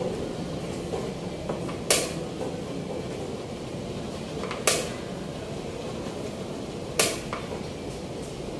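Three sharp clicks, two to three seconds apart, from moves in a fast chess endgame as the players alternate turns, over a steady low room hum.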